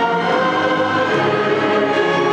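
Massed student choir singing with a large orchestra, moving through long held chords.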